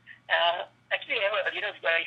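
Only speech: a caller talking over a telephone line, the voice narrow and thin, with a faint steady hum underneath.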